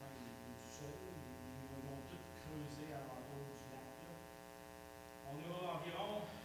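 Steady electrical mains hum with many overtones, under faint, indistinct speech that grows louder near the end.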